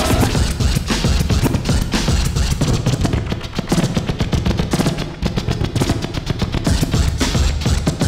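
Turntablist scratching on turntables and a mixer: a fast stuttering run of short chopped sounds over heavy bass, one hand working the record and the other the mixer fader.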